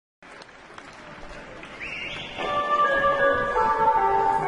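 Audience applause and crowd noise in a concert hall, then, about two and a half seconds in, the band's slow instrumental intro begins: a brief rising glide followed by sustained, layered chord tones that swell in volume.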